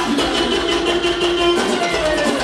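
Live dance-band music with a steady beat: a long held note that starts sliding downward near the end.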